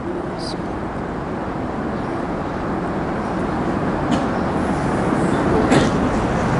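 Steady background noise of a mosque hall picked up by the unattended pulpit microphones, slowly growing louder, with a faint murmur of voices and a few faint clicks.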